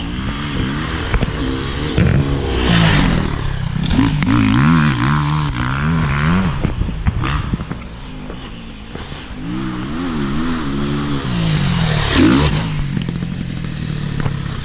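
Enduro dirt-bike engines revving hard as the bikes ride past, the pitch climbing and dropping again and again with throttle and gear changes. The sound swells as each bike nears and fades as it goes by.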